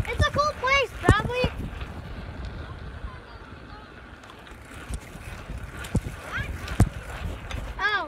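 Short, high-pitched wordless calls from children's voices, several in quick succession at the start and again near the end. Under them runs a low rumble of microphone handling and wind noise, with a few sharp knocks.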